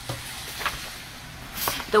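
Soft rustling and a few light ticks of picture-book pages being turned and the book handled, with a woman's voice starting to read again at the very end.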